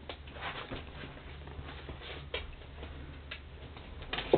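Siberian husky's claws clicking and tapping on a wooden floor as it moves about, a handful of scattered light taps over a faint low hum.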